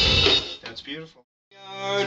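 A rock band track with drum kit and cymbals that cuts off abruptly about half a second in. After a moment of silence, a new pitched part fades in near the end.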